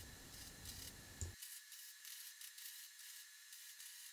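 Near silence: only a faint hiss, with one small tick a little over a second in.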